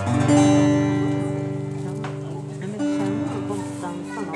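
Live band starting a country-style song: an acoustic guitar strummed over long held chords, with a chord change near three seconds in.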